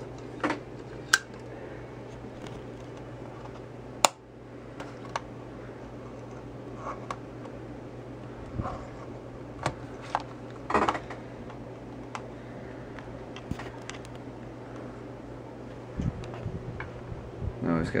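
Scattered sharp clicks and light knocks from handling small parts of a homemade laser, over a steady low electrical hum; the loudest click comes about four seconds in.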